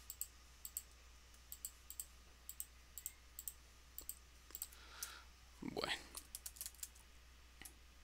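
Faint, irregular computer keyboard keystrokes, two or three a second, typing a login password. A brief, louder noise just before six seconds in.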